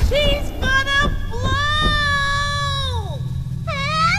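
High-pitched cartoon child voices crying out: two short cries, then one long drawn-out wail that falls off at the end, over a low music underscore.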